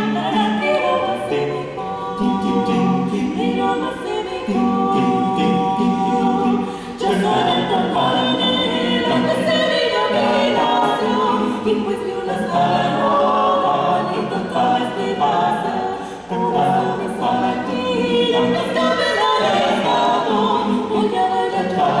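Small mixed vocal ensemble of women's and men's voices singing a cappella, several parts moving together, with brief breaks between phrases about 7 and 16 seconds in.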